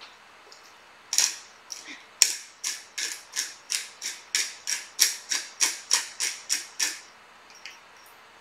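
Black pepper being cracked from a glass pepper grinder with a plastic grinder cap: a run of sharp ratcheting clicks, about three a second, as the top is twisted back and forth. It starts about a second in and stops about a second before the end.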